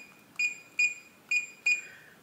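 Reliabilt electronic keypad deadbolt beeping as its number keys are pressed: four short, high beeps about half a second apart, one for each key as the programming code is entered.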